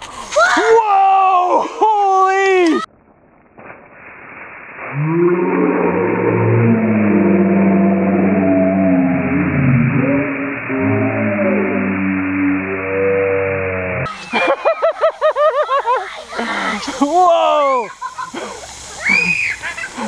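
Children shrieking and yelling in excitement as a Diet Pepsi and Mentos geyser erupts. A long muffled, low-pitched stretch sits in the middle, and the shrieking returns near the end.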